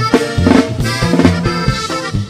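Norteño band music: an instrumental passage with melody over a stepping bass line and a steady drum beat.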